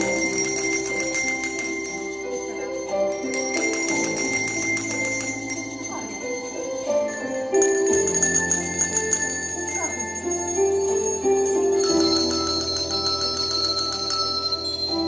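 Slow recorded music with small bells jingling along in rhythm, played by a group of children. The bells come in spells of a couple of seconds, every few seconds.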